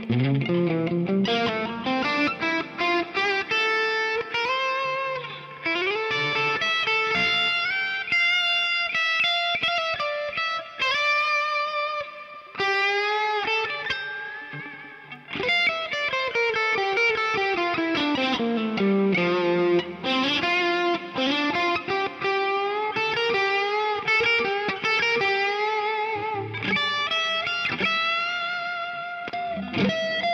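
Tokai SS36 Strat-style electric guitar playing a lead solo: a single melodic line with slides and bends, a rising run near the start and a long descending run about halfway through.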